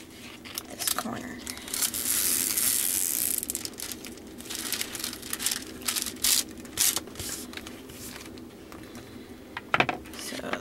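Clear plastic cover film on a diamond painting canvas crinkling and rustling as hands press and smooth it flat. There is a longer, denser rustle about two seconds in, and scattered crackles elsewhere.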